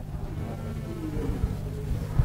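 Steady low hum of room tone, with faint, indistinct voices answering in the room.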